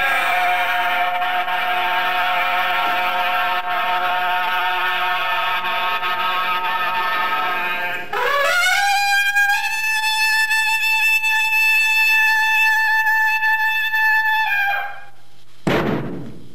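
A men's group chant holds for about eight seconds, then a trumpet slides up into one long, steady note, holds it for about six seconds and drops off. A short downward sweep follows just before the end.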